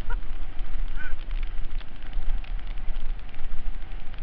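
Mountain bike descending a bike-park trail, heard from a rider-mounted camera: a steady low rumble of wind on the microphone over a constant rattle and crunch from the bike and dirt, with a brief high-pitched squeal about a second in.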